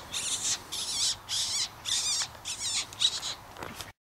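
High-pitched warbling squeaks in short bursts, repeated about twice a second, cutting off suddenly near the end.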